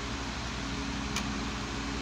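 Steady background hum and hiss, with a single sharp click about a second in as a DVD is pried off the centre hub of its plastic case.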